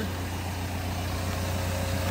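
Caterpillar 320 Next Gen excavator's four-cylinder Cat C4.4 diesel engine idling with a steady low hum.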